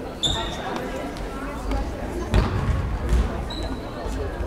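Indoor football being played on a hard sports-hall floor: the ball is kicked and bounces, with one sharp thump about two and a half seconds in, and shoes give two short high squeaks. Voices from players and spectators run underneath, echoing in the hall.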